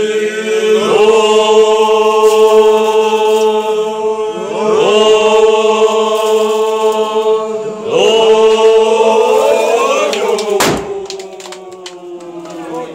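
A group of men chanting together in unison, in three long, steadily held phrases, each opening with a short upward slide in pitch. A single sharp crack comes about ten and a half seconds in, as the chant dies away.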